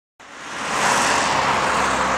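A steady rushing noise that swells up from silence over the first second, then holds, with no clear pitch.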